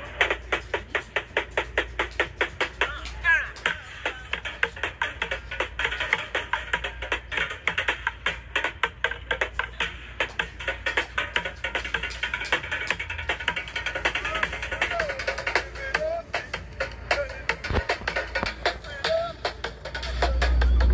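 Street drummer playing an improvised kit of plastic buckets, metal pots and pans and a steel can with drumsticks: a fast, steady run of sharp strikes.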